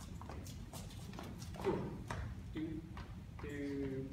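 Dancers' shoes tapping and scuffing on a wooden floor during partnered swing footwork, a quick, uneven run of steps at about two to three a second.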